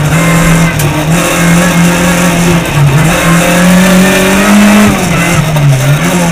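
Rally car's engine heard from inside the cabin, running hard at high revs. Its note rises and falls with throttle and gear changes, with a sharp drop about five seconds in.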